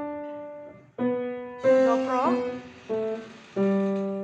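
Acoustic piano playing a slow left-hand line of single notes, one at a time: about five notes, each ringing and fading until the next is struck.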